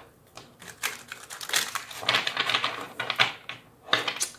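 A deck of oracle cards being shuffled by hand: rapid clicks and flutters of card edges, with a denser run of them about halfway through.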